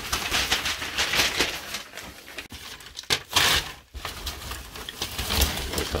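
Newspaper rustling and crinkling as it is handled and wrapped around a bundle of dry twig cuttings, with the brittle twigs rattling against it. The loudest crinkle comes a little after the middle.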